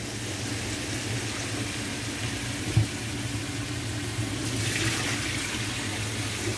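Steady hissing kitchen noise over a low hum, with a single short knock about three seconds in.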